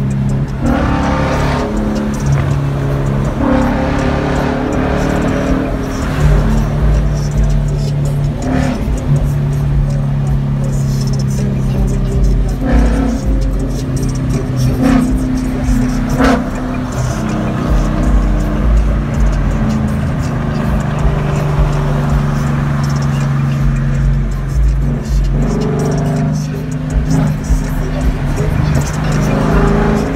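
Music with a heavy bass line over the running of a 2016 Mustang GT's Coyote 5.0 V8 and road noise, heard from inside the cabin while cruising on a highway.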